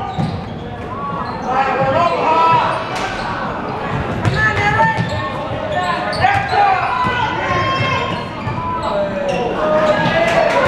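A basketball bouncing on a hardwood gym floor during live play, with voices of players and spectators echoing in a large gym.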